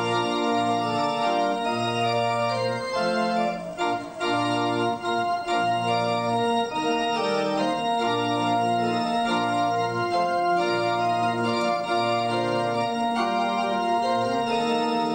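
Organ playing a hymn introduction in slow, held chords, the bass note changing about once a second.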